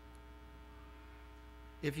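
Low, steady electrical mains hum: a stack of even, unchanging tones. A man's voice starts just before the end.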